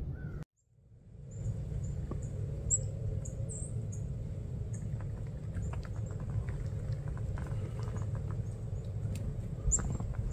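Small birds chirping with short, high, thin calls, scattered throughout, over a steady low rumble. The sound begins about a second in.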